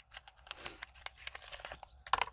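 Faint crinkling and tearing of product packaging as a brow gel is unwrapped by hand: a run of small scratchy clicks and rustles.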